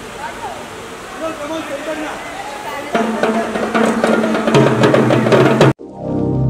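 Voices murmuring, then from about halfway a drummer playing a set of tom drums and cymbal in quick hits over music with a steady beat. It cuts off sharply just before the end.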